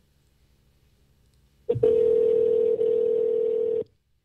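Ringing tone of an outgoing phone call: a single steady tone lasting about two seconds, starting a little under two seconds in and then cutting off.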